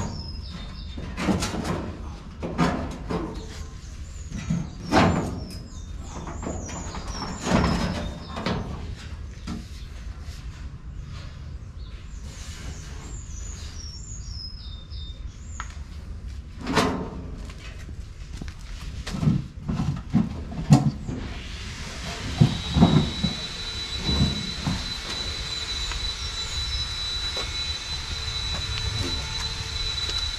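Sheet-metal running board being test-fitted by hand against a pickup truck's rear fender and body: a series of irregular metal knocks and scrapes as it is shifted into place.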